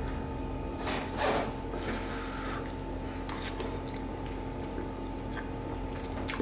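A person quietly chewing a mouthful of slow-cooked beef stroganoff, with a few faint mouth sounds over a steady low electrical hum.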